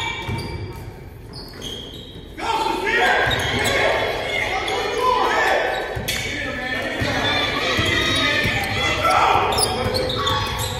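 Basketball dribbled on a hardwood gym court, with voices from players and onlookers echoing in the hall. It gets louder and busier from about two and a half seconds in.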